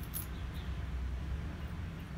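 Steady low hum with a faint click or two of small steel pieces being handled and fitted into a stainless steel tube.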